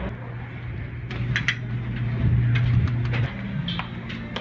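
Glass entrance doors being pushed open, with a few sharp latch clicks and knocks over a steady low hum.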